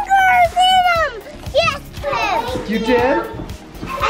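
Young children's high-pitched excited voices and squeals, with music playing underneath.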